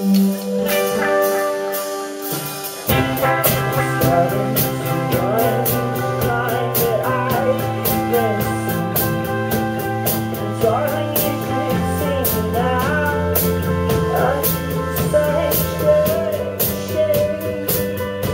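Live rock band playing: a held chord rings for about three seconds, then drums, bass and electric guitar come in together and play on.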